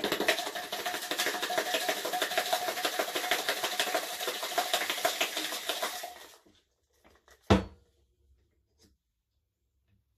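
Ice rattling hard inside a stainless steel cobbler cocktail shaker, a large sphere of ice and the cocktail ingredients shaken fast and vigorously for about six seconds before stopping. A single sharp knock follows about a second later.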